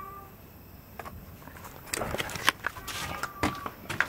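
A domestic cat's short meow just at the start. From about two seconds in come rustling and several knocks, with a faint drawn-out cry under them.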